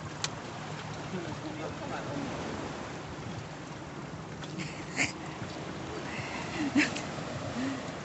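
Sea water washing steadily against the rocks of a jetty, with faint voices in the background. Two brief sharp sounds stand out, about five and about seven seconds in.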